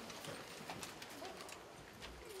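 A roomful of people rising from stacking chairs: scattered faint knocks and scrapes of chair legs and shuffling feet.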